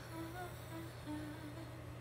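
A woman humming a soft wordless melody in a few short notes that step up and down in pitch, over a low steady background hum.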